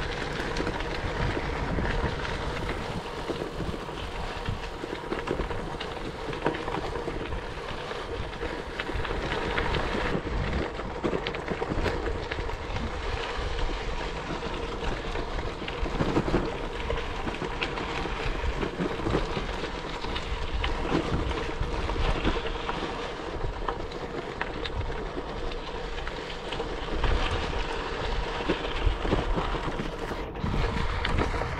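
Wind buffeting the microphone over the rumble of bicycle tyres rolling on a gravel and sand track, a steady jostling noise with no pauses.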